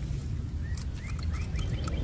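Small birds chirping: a quick run of short rising chirps from about a third of the way in, over a steady low rumble. Leaves rustle as a hand pulls a small die-cast toy car out of the undergrowth.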